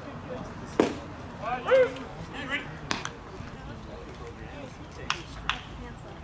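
A pitched baseball smacks into the catcher's mitt with one sharp pop, and about a second later a voice calls out loudly. A few lighter clicks follow later on.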